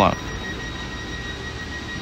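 Stationary ICE high-speed train standing at the platform: a steady high-pitched whine over a low hum.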